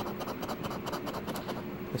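A coin scratching the coating off a paper scratch-off lottery ticket, a rapid run of short scraping strokes.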